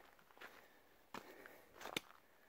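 Faint footsteps of a hiker on a gravel trail, about three steps.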